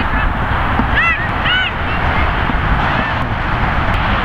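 Outdoor wind rumbling steadily on the camcorder microphone. A couple of short, high, arching calls come about a second in and again half a second later.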